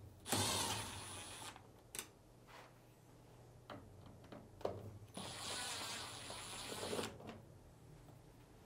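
Milwaukee cordless screwdriver backing out two Phillips screws: the motor whines in two runs, the first about a second long, the second about two seconds near the middle, with a few light clicks of handling between them.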